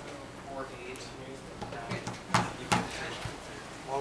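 Faint background chatter, with two sharp taps on the tabletop a little past halfway as playing cards are handled.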